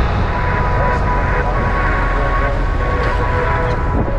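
Steady low rumble of vehicle engine and tyre noise on a paved road, heard from inside a moving vehicle, with a faint steady whine.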